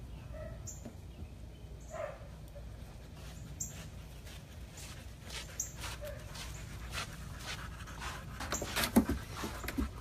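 A dog making a few brief whines, with scattered clicks and taps that come more often near the end.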